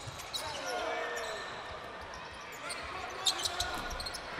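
Basketball game sound in a gym: the ball dribbled on the hardwood court under faint crowd and bench voices, with a few sharp taps about three and a half seconds in.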